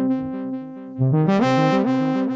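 Synthesizer playing a phrase of held chords over a stepping bass line, with the Maschine+ Metaverb reverb on it. A new phrase starts about a second in.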